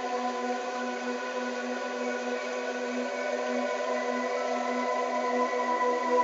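Brainwave-entrainment tone track: a low electronic tone pulsing steadily a few times a second, layered over several sustained higher tones and a soft hiss, like a continuous ambient drone.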